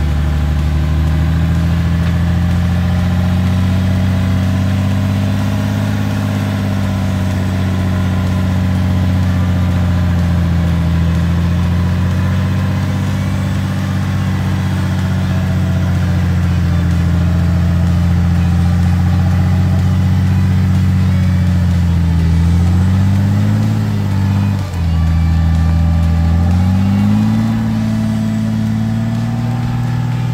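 Nissan Patrol's diesel engine running at low revs while stuck in mud, its pitch drifting slowly up and down. Near the end it revs up, drops sharply for a moment, then climbs again.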